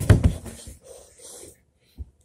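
A sudden loud thump, then softer bumping and rustling, as a child slides down carpeted stairs on a blanket.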